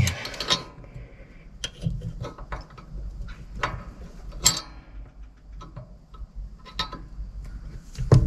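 A small wrench clicking and clinking on a nut on a tractor's clutch cable linkage while it is refitted and turned, an irregular scatter of light metal ticks. The nut is being tightened as a lock nut so that the clutch linkage nut cannot back off.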